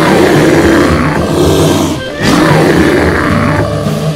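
A bear roar sound effect: two loud, rough roars, each about two seconds long, the second starting about two seconds in, over background music.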